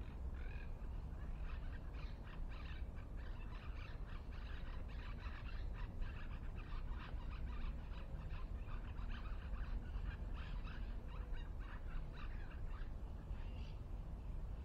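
Birds chirping, many short rapid calls running on almost without a break and easing off near the end, over a steady low rumble.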